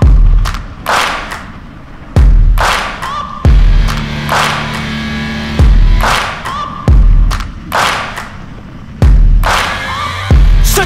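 Background music: an instrumental passage of a rap song, with six heavy bass hits at uneven gaps of one to two seconds, each fading out over held low synth tones.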